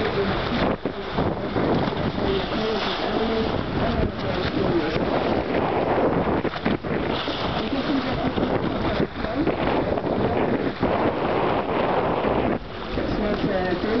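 Wind buffeting the microphone over the rush of water along the bow of a moving catamaran, steady apart from a few brief lulls.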